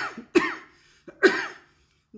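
A woman coughing hard three times in about a second and a half, each cough sudden and then fading; a cough from her coronavirus illness.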